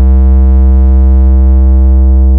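A loud synthesizer bass note held steady in a hard-bass DJ remix, a deep low hum with a stack of buzzy overtones and no beat.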